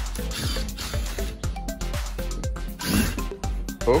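Cordless drill-driver whirring in two short runs, about half a second in and about three seconds in, as it backs screws out of a plywood crate lid. Background music plays throughout.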